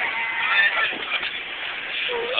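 Short, high-pitched wordless voice sounds, shouts or whoops, that break off and start again.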